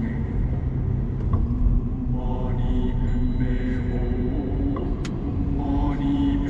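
Steady low road rumble inside a moving Mercedes-Benz car, with a song's sung voice in held phrases heard over it, including a phrase near the end.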